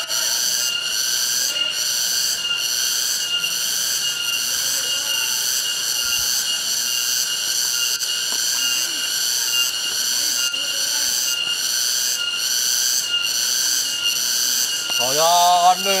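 Cicadas calling: a loud, high, pulsing buzz in several pitches at once, about two pulses a second. A woman's voice comes in near the end.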